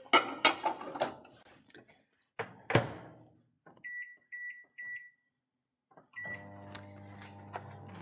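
A bowl is set into a microwave oven and the door shuts with a sharp knock. About a second later come three short keypad beeps, and after another brief beep the microwave starts running with a steady hum for the last couple of seconds.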